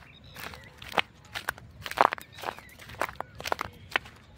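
Footsteps of a person walking on dry, sandy ground, about two steps a second.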